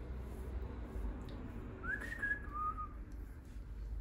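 A person whistling two short notes about halfway through: the first slides up and holds, the second is lower and brief. A low steady hum lies underneath.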